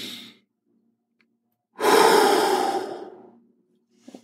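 A person breathing deeply and deliberately into a microphone. The tail of an inhale through the nose fades in the first half second. About two seconds in comes a long exhale through the mouth, sigh-like, that fades out over about a second and a half.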